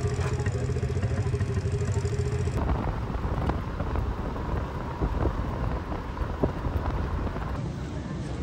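A motor running steadily for the first two or three seconds, then a noisier outdoor background with scattered knocks.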